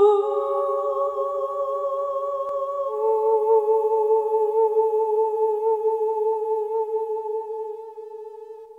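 Soundtrack music: a high, wordless voice hums long held notes with vibrato. Two notes overlap at first, then give way to a single note about three seconds in, which fades near the end.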